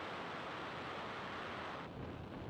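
Falcon 9 first stage's nine Merlin engines running in the seconds after liftoff, a steady rushing noise heard through the launch webcast audio. Near the end the hiss thins and a deeper rumble takes over.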